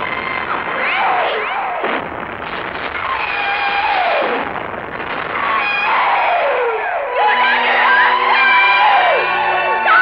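Movie soundtrack: many voices shouting and screaming over dramatic background music.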